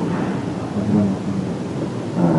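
A man speaking quietly and indistinctly, the voice muffled and muddy in a deliberately degraded, hard-to-hear recording.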